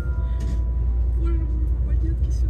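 Steady low rumble of a Sapsan high-speed train, heard from inside the passenger carriage, with quiet voices over it about a second in.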